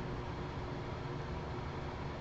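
Steady background hiss with a low hum and a few faint steady tones running underneath, unchanging throughout; no distinct handling sounds stand out.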